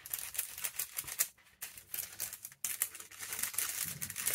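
Ink blending tool being dabbed and scrubbed quickly along the edges of a paper envelope: a fast run of soft taps and paper rustle, with two brief pauses partway through.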